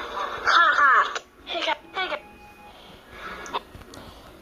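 A high-pitched voice in short bursts with sliding pitch. The loudest comes about half a second in, with two shorter ones around one and a half and two seconds in.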